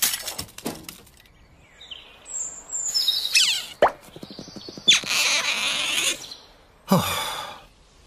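A run of cartoon sound effects with no speech: a few short, high beeps, then quick falling swoops, a burst of hiss and a last swoop dropping steeply in pitch about seven seconds in.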